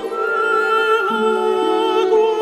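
Classical chamber music: a female art-song voice holding long notes over sustained lower instrumental notes, with a small dip in the melody about a second in.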